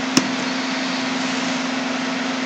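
Steady background hum and hiss from the recording setup, with a single computer-keyboard keystroke click about a quarter-second in.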